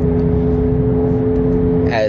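Car being driven, heard from inside the cabin: steady engine and road rumble with a constant low hum.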